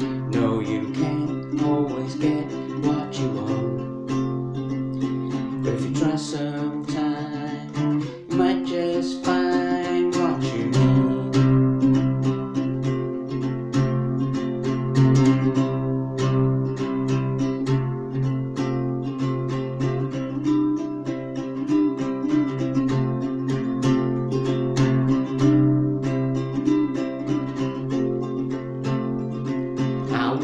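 Nylon-string acoustic guitar strummed in a steady rhythm, tuned to open G with the low string also raised to G, a capo on the neck.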